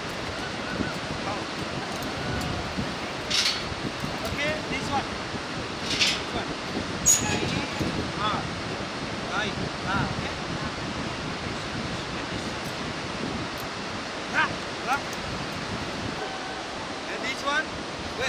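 Steady rushing of a fast mountain river, with short voice calls and shouts breaking in now and then, the loudest about 3, 6 and 7 seconds in.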